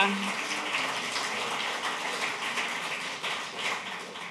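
Audience applauding, gradually dying down.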